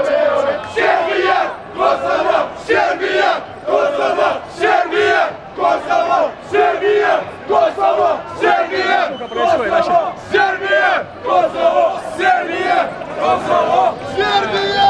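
A crowd of football fans chanting together, male voices shouting a short repeated chant in a steady rhythm of about two beats a second.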